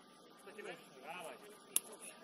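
Players' voices calling out at a distance, with a single sharp knock about three-quarters of the way through, the loudest sound.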